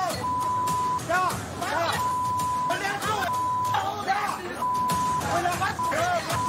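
Television censor bleeps: a steady high beep tone cuts in and out about six times, masking shouted profanity. Several agitated voices yell in the gaps between the bleeps.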